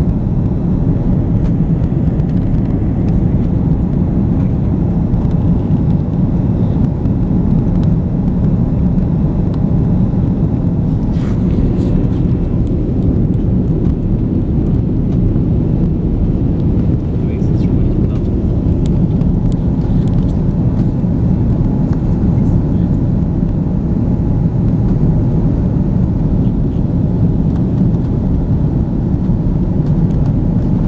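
Steady low rumble of an airliner's cabin in flight: engine and airflow noise heard from a window seat, even throughout.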